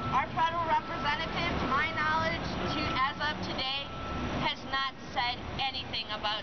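Voices talking, over the low rumble of city street traffic. A thin steady high tone runs under them and stops about two-thirds of the way in.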